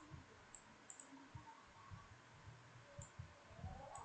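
Near silence with a few faint computer mouse clicks, scattered and irregular.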